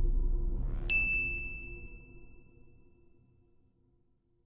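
Logo-sting sound effect: a short rising sweep ends in a bright ding about a second in, its single high tone ringing on and fading over about two seconds, over a low rumble that dies away.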